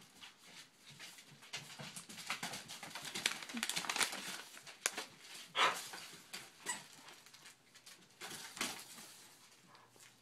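A smooth collie rustling and tearing at a present wrapped in shiny silver paper with her mouth: irregular short crinkles and rips, the loudest about halfway through.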